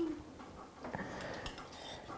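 Mostly quiet room tone, with faint low murmuring and a single light click about one and a half seconds in.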